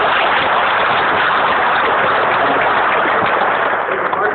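Audience applauding, a steady dense clapping, recorded with a phone's narrow, muffled sound.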